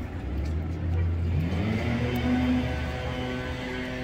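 Low street-traffic rumble for the first second and a half, then a tone rises and settles into steady held notes that run on, like background music coming in.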